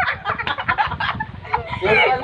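Two women laughing hard in rapid, choppy bursts of breath and voice, with a short high-pitched squeal of laughter near the end.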